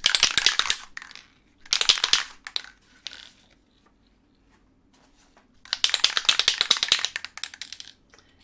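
Aerosol fixative spray can being shaken, its mixing ball rattling in quick bursts: one at the start, another about two seconds in, and a longer one of about two seconds near the end.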